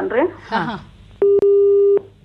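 Telephone busy tone coming through the studio phone line: one steady low beep starts a little over a second in and lasts most of a second, with a click partway through. The call has failed or dropped.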